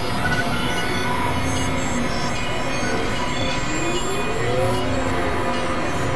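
Experimental synthesizer noise music: a dense, steady wash of noise laced with many held tones. A little before the middle one tone glides slowly up and then back down.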